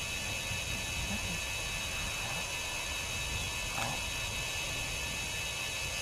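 Steady background noise: a low rumble and an even hiss, like wind on the camera microphone, with no clear event.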